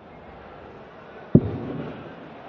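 Quiet hall ambience, then about one and a half seconds in a single sharp thud of a dart striking a Unicorn Eclipse HD2 bristle dartboard, with a short tail of hall noise after it.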